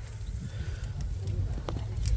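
Chili plants rustling as pickers work through them, with a few faint light snaps of chilies being broken off, over a steady low rumble.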